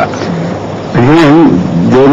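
A man's voice making sounds without clear words: a short one near the start, then a longer wavering one from about halfway.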